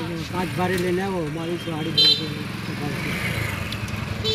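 A motorcycle engine runs under a man's talk, with a short high horn toot about halfway through.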